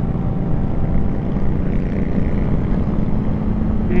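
Suzuki GSX-R600 sportbike's inline-four engine running at a steady cruise with wind and road noise, heard from on the moving bike.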